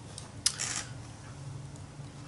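Hands handling a painted paper journal page: a single sharp click about half a second in, followed by a short rustle, then low steady room noise.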